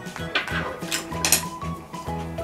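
A few short clinks of chopsticks against tableware, the sharpest one just past halfway, over steady background music.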